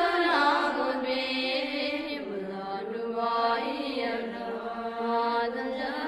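Sung chanting of a Tibetan Buddhist guru-supplication prayer, the voice drawing out slow, held melodic lines over musical accompaniment.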